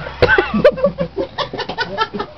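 Loud laughter: a high, pitch-bending laugh starting a fraction of a second in, then a quick run of short giggles, several a second.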